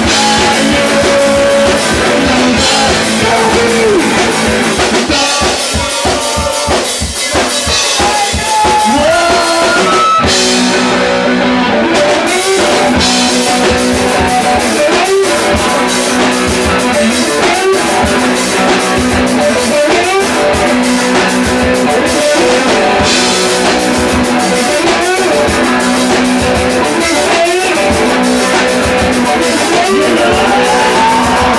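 Rock band playing live: electric guitar over a drum kit, with notes sliding up and down in pitch. The sound thins briefly about a fifth of the way in, then the full band comes back.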